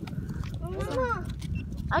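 A short wordless call that rises and then falls in pitch about a second in, over a steady low rumble.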